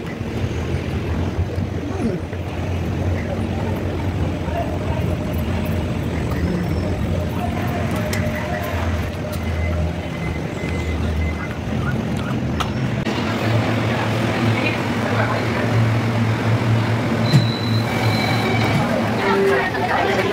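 Metro train and station ambience: a steady low hum with background voices, and a few short high beeps near the end.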